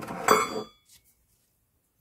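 A brief metallic clink with a short ring as steel gearbox parts knock together while being handled, in the first half-second.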